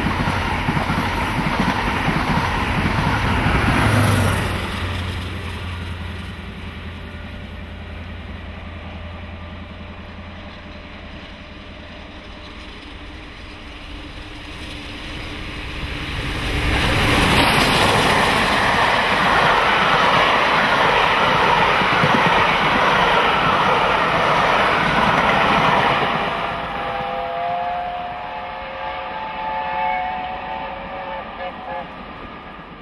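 Steam locomotive 70000 Britannia, a BR Standard Class 7 two-cylinder Pacific, hauling a train of coaches. For the first few seconds it is heard approaching through rain pattering loudly on a plastic bag over the camera. After a quieter stretch the sound builds, and for about ten seconds the engine and coaches pass close at speed, the loudest part.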